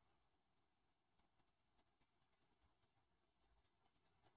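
Near silence, broken from about a second in by faint, irregular light clicks and crackles as a nitrile-gloved hand pushes wet resin around on wax paper.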